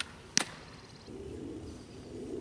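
A fastpitch softball pops into the catcher's mitt once, sharply, about a third of a second in. A low steady background rumble follows from about a second in.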